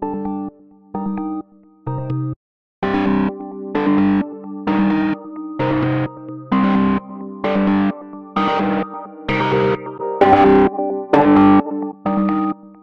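Synth lead melody of short, repeated chord stabs played back through the Waves Brauer Motion panning plugin while its presets are switched. The first few stabs are quieter and duller; from about three seconds in they come out louder, brighter and distorted.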